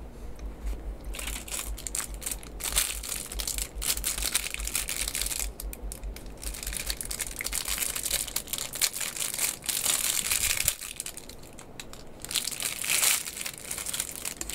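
Crinkling and crackling of a small MRE packet's plastic wrapper being handled and worked open with the fingers, in dense bursts with a short lull about three quarters of the way through.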